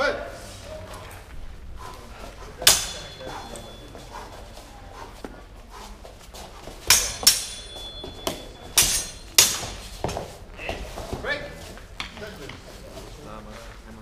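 Fencing swords clashing in a sparring exchange: one sharp strike about three seconds in, then a quick flurry of five strikes, some leaving a brief metallic ring.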